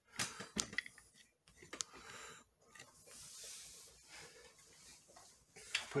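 Faint handling noise: scattered light clicks and small knocks, with a soft hiss for about a second and a half around the middle, as the pressure cooker's lid is picked up and brought over to the pot.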